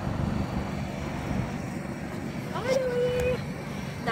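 A steady low engine rumble, with a woman's voice giving one drawn-out, held exclamation about three seconds in.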